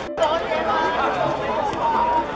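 Several people's voices talking over one another in indistinct chatter, starting suddenly just after a short break in the sound.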